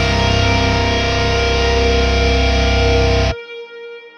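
Heavily distorted electric guitar over bass, holding a sustained chord, the guitar heard through an amp sim and a Marshall 1960 cabinet impulse response with a Vintage 30 speaker. The whole mix stops suddenly about three seconds in, leaving a faint ringing tail.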